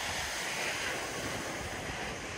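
Surf breaking and washing up a beach: a steady rush that swells about half a second in and then eases, with some wind on the microphone.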